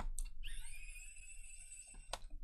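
Small hand screwdriver clicking into a screw on a laptop's plastic bottom cover, then a faint, steady, high whine for about a second and a half.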